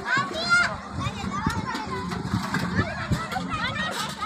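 Overlapping chatter and calls of a crowd of village women and children, with high children's voices among them.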